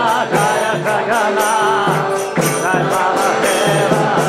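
Devotional kirtan: voices singing a chanted mantra over a steady drum beat and jingling percussion.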